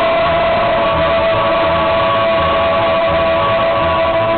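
A tamburitza orchestra plays live: strummed tamburicas and upright bass keep a steady pulse under one long held note.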